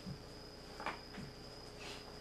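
Faint knocks and rustles of a plastic anatomical skeleton model being handled and its legs moved on a padded mat: a soft low thump at the start, a sharper brief rustle a little under a second in, and softer ones after. A steady high-pitched whine runs underneath.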